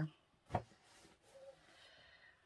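A single sharp knock about half a second in, then faint room noise.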